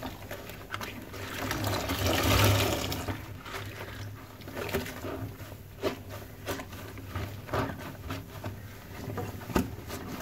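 Loofah sponges squeezed and swished through soapy water by gloved hands, with sloshing and squelching. A louder swell of water comes about two seconds in, followed by a run of short, sharp squelches.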